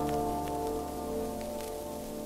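The final held chord of an orchestra fading away, played from an old mono vinyl single, with a few crackles and hiss from the record surface.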